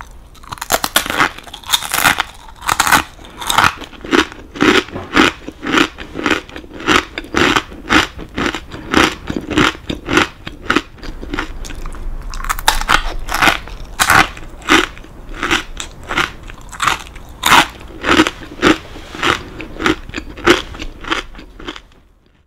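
Close-miked chewing of large, hard kakinotane rice crackers: a steady run of crisp crunches, about two a second.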